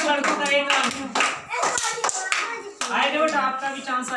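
A group of children clapping their hands, with children's voices calling over the claps.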